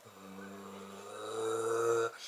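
A man's voice humming one low, held note a cappella, swelling louder through the second half and breaking off at the end.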